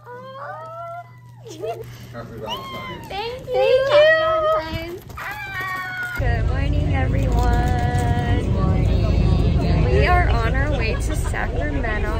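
High-pitched, gliding voices squealing and exclaiming. About six seconds in, a steady low rumble of a bus interior starts under continued voices.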